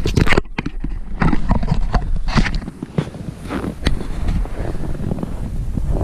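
Irregular crunching and knocking on packed snow, like footsteps and handling, over a low rumble of wind on the microphone.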